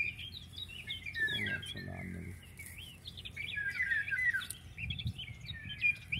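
Many small wild birds chirping, with quick, overlapping high calls.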